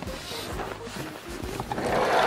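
Background music over someone climbing into a Mazda Bongo van through its sliding side door: low knocks of steps and movement, then a rising rush near the end as the sliding door begins to roll shut.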